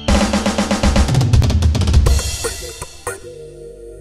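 Intro music sting led by a drum kit: a fast drum roll of rapid snare and bass drum strikes for about two seconds, a single sharp hit about three seconds in, then a held low chord.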